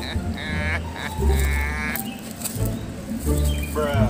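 Two bleats from small livestock, a short one and then a longer, wavering one about a second later.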